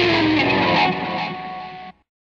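Rock song ending on a ringing distorted electric-guitar chord that drops away about a second in, fades, and cuts off suddenly near the end.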